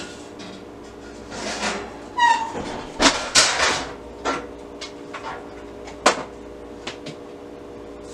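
Off-camera handling noises: several short rustles and knocks, one sharp click about six seconds in, over a faint steady hum.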